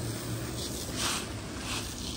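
Garden hose spray nozzle hissing as it waters a planting bed, the spray pattering on wet soil and leaves, with a few brief surges in the hiss.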